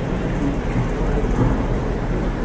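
Steady low rumbling background noise with no clear events.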